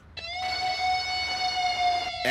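Synthesized chord from the film's soundtrack: it slides up in pitch about a quarter-second in, then holds steady.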